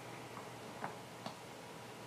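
Low room tone in a pause, with three faint ticks about half a second apart.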